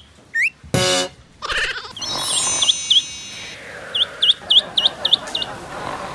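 A duckling peeping in a quick run of short, high chirps, about seven in a row in the second half. Added sound effects are mixed in: a brief burst near the start and a falling sparkling tone around the middle.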